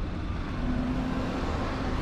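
Steady low rumble of street traffic, with a faint steady low hum coming in about half a second in.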